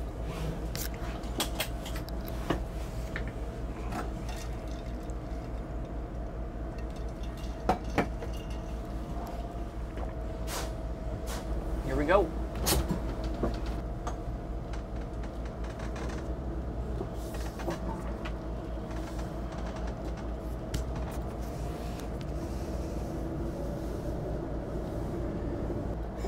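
Rear-mounted diesel engine of a Class A motorhome running with a low, steady pulsing hum, heard from inside the cab. Scattered light clicks, and a short rising-and-falling tone about halfway through.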